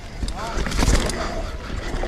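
Mountain bike running down a steep, loose dirt trail: tyre and trail noise with the bike rattling and wind buffeting the camera mic, swelling to its loudest about a second in.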